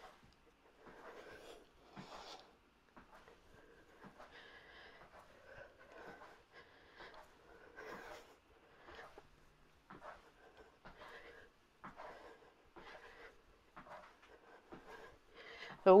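Faint, rhythmic breathing of a woman exercising, a soft breath about once a second as she marches in place pressing hand weights.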